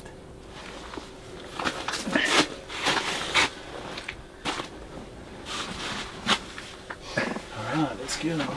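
Low, indistinct voices and a few short rustling or knocking noises, such as clothing or gear being handled.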